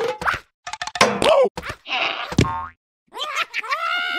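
Cartoon slapstick sound effects: a springy boing and several quick knocks and thuds, mixed with the animated characters' wordless squeals and gibberish cries. The sounds are brief and choppy, with a short break before a long rising-and-falling cry near the end.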